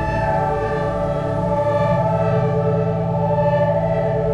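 Ambient synthesizer music from a Sequential Prophet Rev2 analog synth: a sustained pad chord held over a steady low bass tone, with no percussion.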